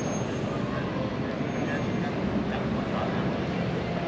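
Busy city street ambience: a steady rumble of traffic with indistinct chatter from passersby.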